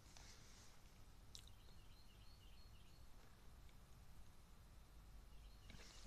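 Near silence: room tone with a faint steady low hum, one faint click about a second and a half in, and a few faint high chirps just after it.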